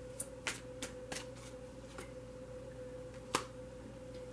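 Tarot and oracle cards being handled and a card laid down on the spread: several light clicks and taps over the first two seconds, and a sharper snap a little after three seconds, over a faint steady hum.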